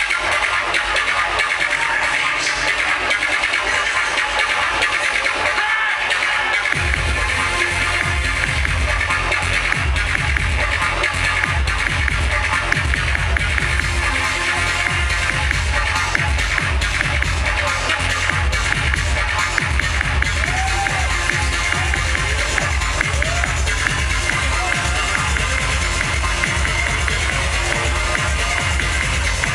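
Electronic music played loud through a venue's PA at a live show. A heavy bass beat comes in about seven seconds in and keeps a fast, driving pulse from then on.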